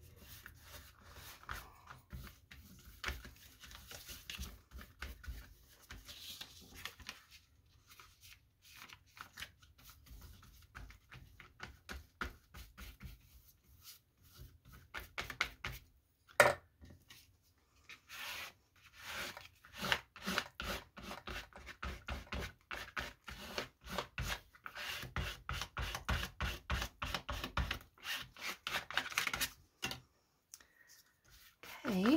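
A flat glue brush scraping over paper in quick repeated strokes, with hands rubbing and smoothing the pages flat. The strokes come thicker in the second half. There is one sharp knock about sixteen seconds in.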